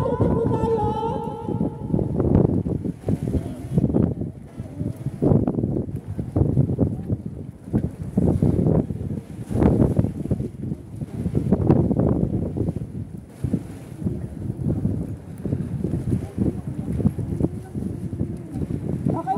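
Wind buffeting the phone's microphone in uneven gusts, with indistinct voices of people around.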